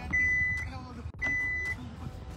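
Two high, steady warning beeps, each about half a second long and a second apart, from the Kia Grand Carnival's power tailgate as its close button is pressed and it begins to close.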